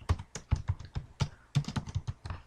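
Computer keyboard keys clicking as a short line of text is typed: an irregular run of quick keystrokes.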